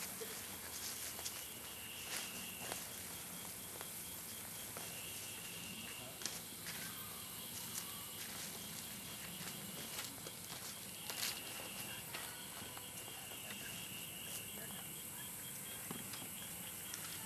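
Night insects calling in repeated bursts of fast, evenly pulsed chirps at a high pitch, with scattered clicks and footsteps on dirt.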